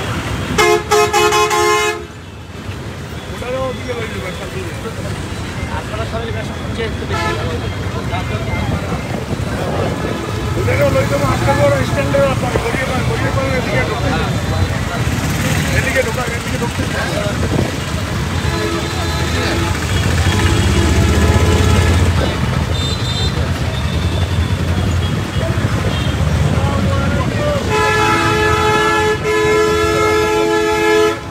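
Vehicle horns honking in street traffic. A loud blast lasts about a second and a half right at the start, weaker honks come around the middle, and a long blast starts near the end, all over steady traffic noise and voices.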